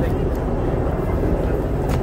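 Steady low rumble of vehicle engine noise on a city street, with people talking.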